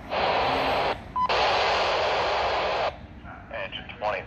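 Fire dispatch radio keying up: two bursts of radio static hiss with a short beep between them, then the dispatcher's voice begins near the end.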